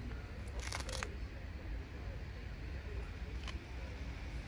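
Steady low rumble of outdoor background noise on a handheld phone's microphone, with a short burst of scuffing and clicking handling noise about a second in and one faint click near the end.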